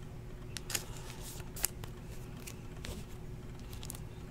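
Faint handling of cardboard trading cards: a few soft clicks and rustles as cards are slid off the stack and set down, the sharpest about a second and a half in. A low steady hum lies beneath.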